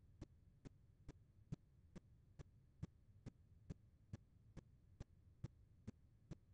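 Near silence with faint, evenly spaced clicks, a little over two a second.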